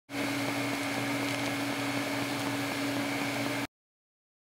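TIG welding arc burning steadily: an even hiss with a constant low hum and a fainter high whine. It cuts off abruptly near the end.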